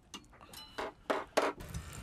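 A few sharp, irregular clicks and knocks, four or five in two seconds.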